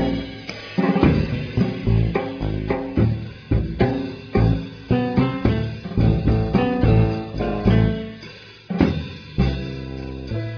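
Instrumental passage of a jazz ensemble recording: drum kit hits over deep bass notes, with guitar, and no singing.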